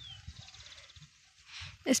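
Faint bird calls: a short falling whistle at the start, then a quick, quiet trill.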